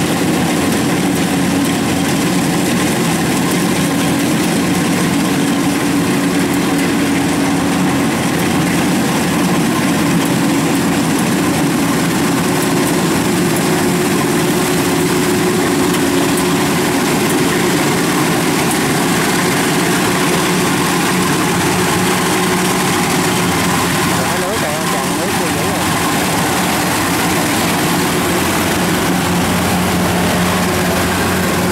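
Kubota crawler combine harvester running steadily with its diesel engine and threshing machinery working, a continuous even drone.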